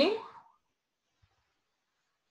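The end of a spoken question, the voice rising in pitch and trailing off within the first half second, then near silence with a faint click.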